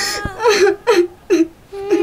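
A girl sobbing and whimpering in three short sobs, each dropping in pitch, about half a second apart. A held note of background music runs underneath.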